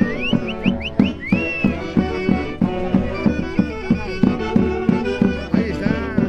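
Traditional Andean folk dance music from a band, with a steady beat under a melody; a high instrument plays several quick rising slides in the first second or so.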